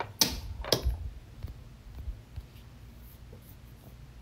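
Objects being handled on a wooden tabletop: two sharp knocks in the first second, then faint low room noise.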